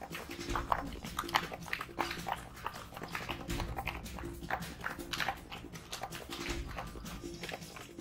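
Repeated barking over background music with a repeating beat.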